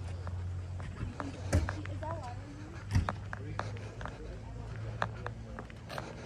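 Footsteps walking on a roadside, a string of short, sharp steps, two of them louder about a second and a half and three seconds in, over a steady low hum and faint voices.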